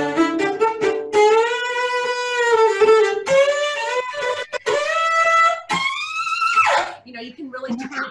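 Cello bowed hard to imitate a rock electric guitar: a run of short choppy strokes, then long notes with a wavering, bending pitch, ending on a note that slides up and then drops away about seven seconds in. A voice follows near the end.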